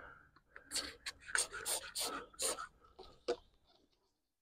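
Faint, short scrubbing strokes, about seven in under three seconds, as all-purpose cleaner is worked onto a car's plastic inner door panel.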